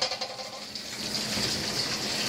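Kitchen tap running steadily into a stainless steel sink.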